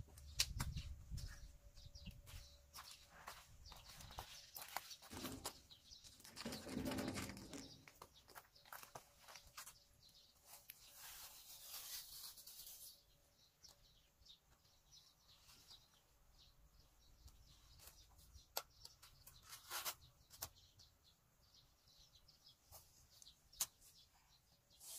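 Faint handling noises of a worker moving and crouching: scattered clicks and knocks with rustling, and a longer stretch of rustling about eleven seconds in.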